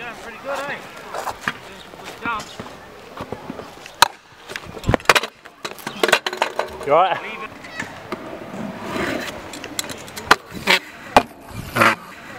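Stunt scooter wheels rolling on concrete, with repeated sharp clacks and knocks as the wheels and deck strike the ground. Hard impacts come about four to five seconds in, where a rider crashes and the scooter clatters down.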